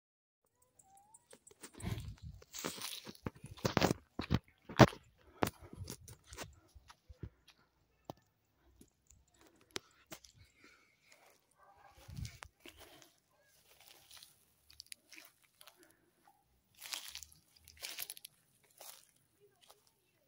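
Footsteps on dry ground and vegetation: irregular crunching steps and scuffs, thickest and loudest in the first several seconds, then sparser and fainter.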